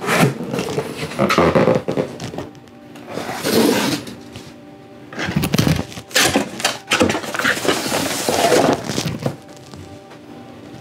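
Cardboard packaging being pulled apart and handled: several bouts of scraping and rustling with a few thunks, over steady background music.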